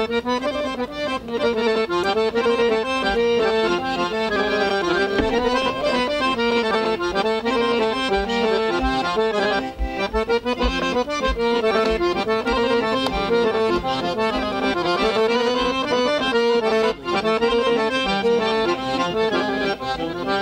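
Piano accordion playing a solo folk melody: the instrumental introduction to a Serbian folk song.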